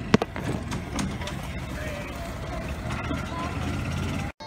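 Phone microphone being handled, with a few sharp knocks at the start, then faint chatter of people around it over a low steady rumble.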